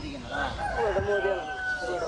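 A long, drawn-out pitched call that starts about a third of a second in and is then held at one steady pitch.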